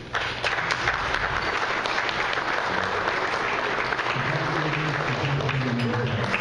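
Audience applauding: steady clapping that starts abruptly and holds at an even level.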